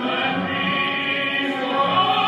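Choral, operatic-style music playing: many voices singing held notes.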